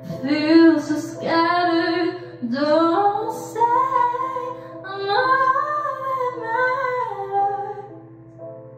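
A young woman singing solo into a handheld microphone, with phrases that glide and hold notes for about a second. Her voice is backed by sustained instrumental chords.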